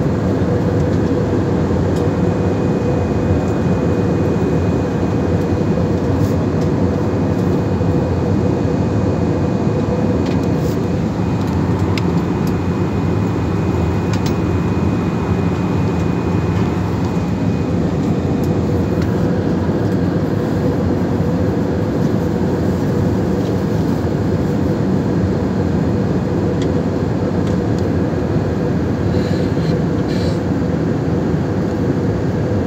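Jet airliner cabin noise in cruise, heard from inside the cabin: the engines and airflow making a steady, low, even drone with a constant hum running through it.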